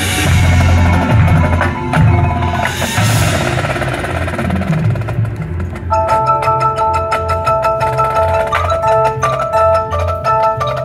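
Marching show band percussion playing: heavy low bass pulses with two bright crashes, then from about six seconds in the front ensemble's mallet keyboards take up a fast repeating figure of short notes over a pulsing bass.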